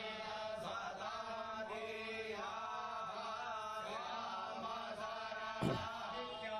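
Hindu priests chanting mantras in slow, long-held melodic phrases at a fire-ritual puja, heard fairly quietly. A short louder low sound comes near the end.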